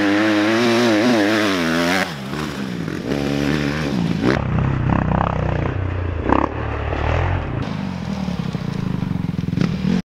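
Dirt bike engines revving as they ride a dirt track, heard in short clips cut together. First one bike's engine rises and falls in pitch with the throttle; about two seconds in it cuts to another stretch of engine sound. Then it cuts to a lower engine rumble with a few knocks and clatter.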